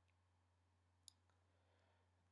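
Near silence: faint room tone with a steady low hum, and one brief faint click about a second in.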